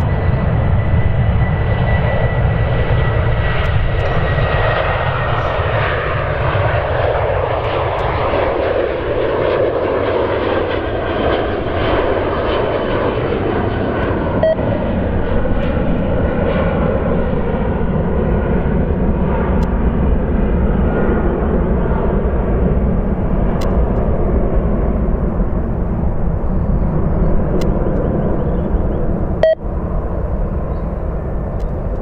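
Twin jet engines of a KLM Boeing 737 at takeoff power as it rolls down the runway and climbs away. The sound is loud and steady with a deep rumble, and a high whine fades out over the first several seconds.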